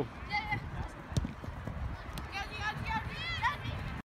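Faint, distant shouts of players and spectators across an outdoor soccer field over a low rumble, with one sharp knock about a second in.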